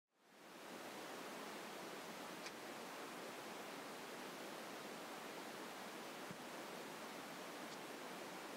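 Steady low hiss of recording background noise, fading in at the start, with a faint click about two and a half seconds in and a soft thump a little after six seconds.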